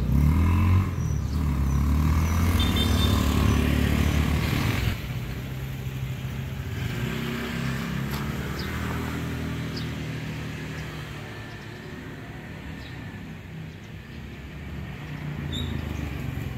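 Road traffic, mostly motorcycle and car engines passing and changing pitch, loudest for the first five seconds, then a fainter steady hum. A few small chirps are heard over it.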